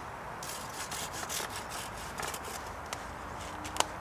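Small hand saw cutting through the top of a thin wooden fence stake in uneven strokes, with a sharp click near the end.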